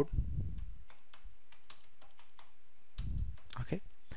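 Typing on a computer keyboard: irregular, spaced key clicks, with a brief low rumble at the start and another about three seconds in.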